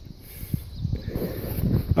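Low rumble of distant highway traffic, with a few faint knocks.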